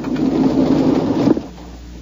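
A radio-drama sound effect: a rushing noise that lasts about a second and a quarter and then drops away, leaving a low steady hum.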